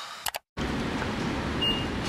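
Steady outdoor traffic ambience: a low, even hum of road noise around a parking lot. It follows a couple of short clicks and a sudden cut about half a second in.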